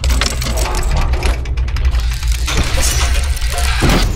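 Logo-animation sound design: rapid glitchy clicks and crackles over a steady deep bass drone, with a couple of whooshing sweeps in the second half.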